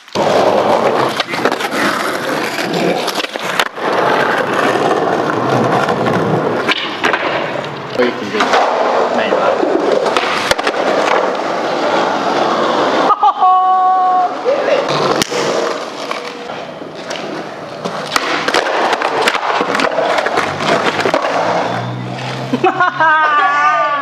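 Skateboard wheels rolling over rough concrete, with repeated sharp clacks and knocks of the board hitting the ground.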